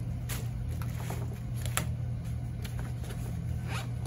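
Zipper on a pocket of a nylon tactical backpack being pulled in several short rasps, over a steady low hum.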